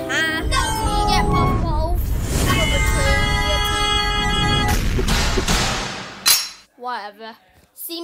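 Cartoon sound effects: a long, loud rushing whoosh with sustained tones over it, cut off by a sharp crack about six seconds in. A character's voice follows shortly after.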